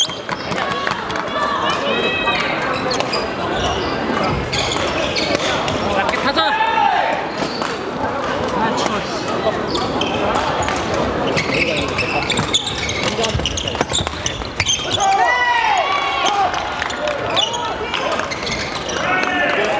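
Badminton doubles play in a busy sports hall: sharp racket strikes on the shuttlecock and court shoes squeaking on the wooden floor, over steady background chatter that echoes through the hall. The squeaks come in short rising-and-falling chirps a few times, with a cluster near the end.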